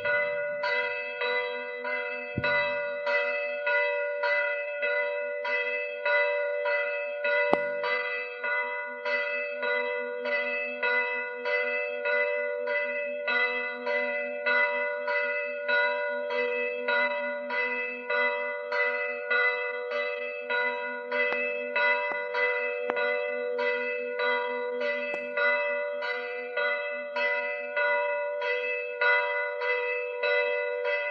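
A church bell ringing in a steady, even rhythm of about two strokes a second, each stroke sounding over the ring of the last.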